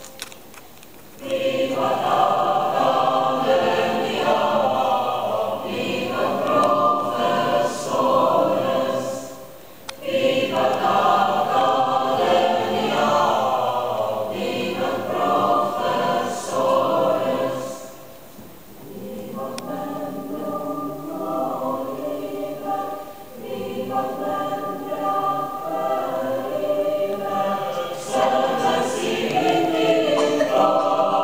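A choir singing in long phrases separated by brief pauses; the singing is softer in the second half.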